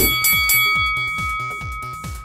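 A bell-like chime sounds once as the 60-second timer begins, its tones fading over about two seconds. Electronic dance music with a fast, steady beat plays under it, and a sharp hit lands right at the start.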